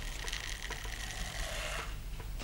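Small balls pouring out of a tall paper-covered cardboard tube into a short cylinder: a steady rattling hiss of many tiny pattering ticks that stops shortly before two seconds in.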